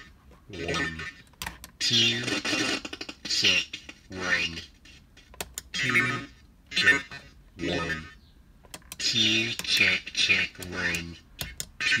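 A man's test phrases ("check, one two") come out of a circuit-bent telephone whose voice changer, spring reverb and PT2399 delay warp them, bending the pitch of some syllables. Near the end a syllable repeats quickly, "ch ch ch ch", as the delay feeds back.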